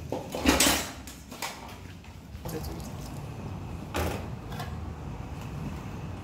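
Metal kitchenware being handled: a pot lid and spoon scraping and knocking against a stainless-steel sink and pot. There is a loud scrape just after the start, a click about a second later, and a short knock about four seconds in.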